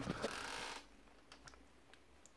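A faint rustling noise for under a second, then near silence broken only by a few faint ticks.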